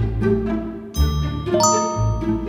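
A two-note chime from a laptop chat-message notification, the first note about a second in and the second half a second later, over background music.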